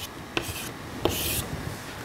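Chalk on a blackboard: a few short taps, then a longer scratchy stroke about a second in as a line is drawn.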